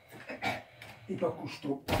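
A window being shut with one loud, sharp bang near the end, after faint voice sounds.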